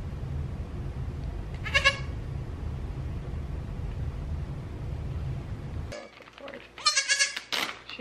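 Newborn Nigerian Dwarf goat kid bleating: one short high bleat about two seconds in, then a run of louder bleats near the end. A low steady rumble runs underneath and cuts off about six seconds in.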